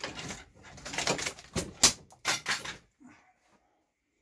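Rustling and knocking of objects being moved about and picked up on a workbench, with one sharp clack a little under two seconds in; the handling noise stops about three seconds in.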